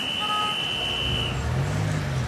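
Street traffic: a high horn sounds one steady toot lasting about a second and a half, then a car's engine runs close by as it passes.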